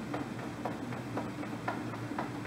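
Hands tapping on the lower belly in a steady rhythm, soft taps about two a second with lighter ones between, over a steady low hum.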